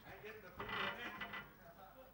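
Faint, indistinct voices.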